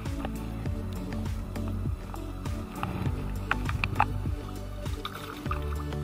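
Background music over light splashing in shallow water as a caught estuary perch is lowered in and released.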